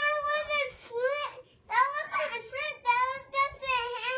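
A young child's high voice singing in sustained, sing-song phrases, opening with a 'woo', with a short break about a second and a half in.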